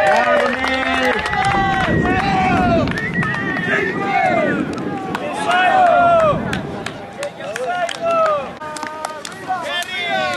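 Several players' voices shouting and calling over one another on the field, with a few sharp clicks scattered through the second half.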